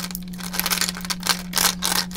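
Lip gloss tubes clicking and clattering against each other as hands sort through a drawer full of them: a quick, uneven run of small clacks.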